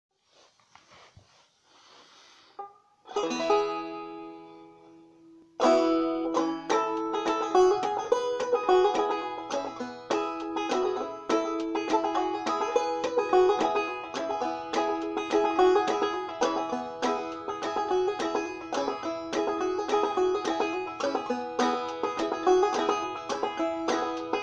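Five-string banjo played clawhammer style, tuned down to open E (g#EBEF#). A few faint handling noises come first, then a single strummed chord rings out about three seconds in and fades. From about five and a half seconds a steady clawhammer rhythm of picked melody and brushed chords runs on.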